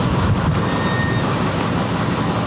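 Diesel engine of a truck-mounted crane running steadily under load while it hoists a concrete slab out of a trench.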